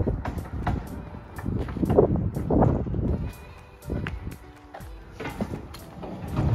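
Background music, with a low rumble underneath in the first half.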